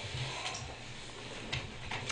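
Quiet meeting-room tone with a low hum and a few faint clicks or taps.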